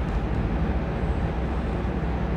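Steady low background rumble with a faint hiss: constant room or recording noise, with no distinct events.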